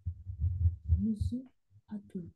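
A voice reading quietly over a video call, with a low rumble underneath and a short breathy hiss about a second in.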